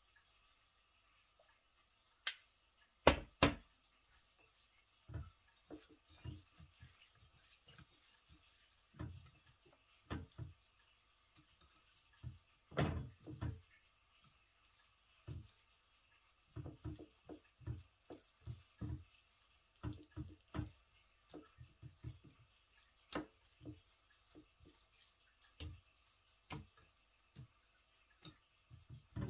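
Hands rubbing oil and spices into raw mackerel fillets on a ceramic plate: irregular soft, wet slaps and squelches, with light taps of fish against the plate. Two sharp knocks about three seconds in are the loudest sounds.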